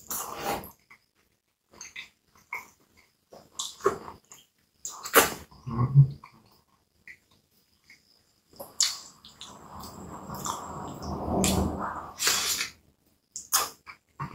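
Close-miked eating sounds: a person biting into and chewing a hot dog in a soft bun topped with cabbage, with wet mouth smacks and clicks throughout and a longer, denser stretch of chewing in the second half. A short hummed "mm" about six seconds in.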